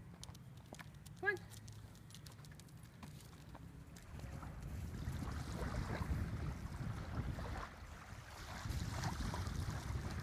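Wind buffeting the microphone in gusts, starting about four seconds in. Before it, a faint low hum with a brief wavering high-pitched call about a second in.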